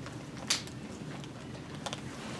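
Quiet meeting-room background with one sharp click about half a second in and two faint ticks near the end.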